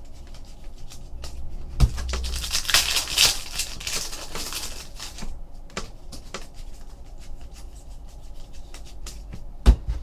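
A foil trading-card pack being torn open, its wrapper crinkling for a couple of seconds, with a few sharp taps as cards are handled.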